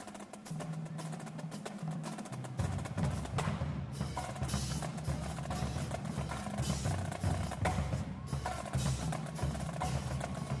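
Marching drumline playing a cadence: fast, dense snare and tenor drum strokes, with the bass drums joining about two and a half seconds in. Cymbal crashes ring out a few times.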